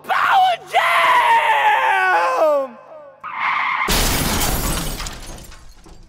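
Intro sound effect for an animated logo: a pitched sweep of several tones falling over about two seconds, then a sudden crash that dies away over the next two seconds.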